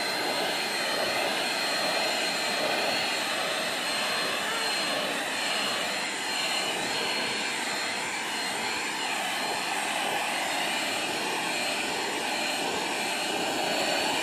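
Handheld vacuum cleaner running steadily with a high whine, its narrow nozzle drawn over a cat's fur to suck up loose shed hair.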